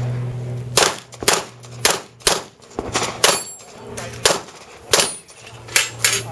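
A string of about nine pistol shots fired in quick succession at a practical-shooting stage, roughly half a second to a second apart, each followed by a short echo. A steady low hum sits under the first second and drops out once the firing starts.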